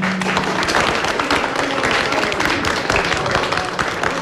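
A group of people applauding: dense, continuous clapping, with some voices mixed in.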